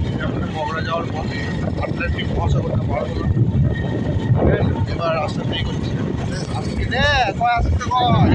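Wind buffeting the microphone of a moving open vehicle, a dense low rumble, with scattered voices of the riders; about seven seconds in, one voice rises and falls sharply in pitch.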